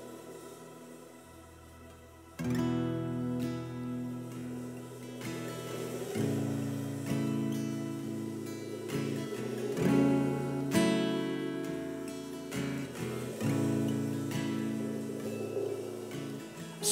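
Live band playing a slow instrumental song intro. It opens with a soft, quiet wash of sound. About two and a half seconds in, strummed acoustic guitar chords come in with the rest of the band, the drummer on mallets, and the chords change every few seconds.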